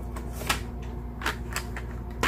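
A few light clicks and taps as a cardboard box of watercolor pencils is picked up and handled on a desk.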